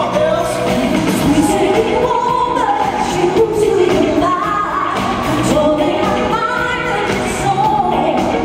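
Singers with handheld microphones performing a 1970s-style pop number over loud backing music, the vocal line moving up and down without a break.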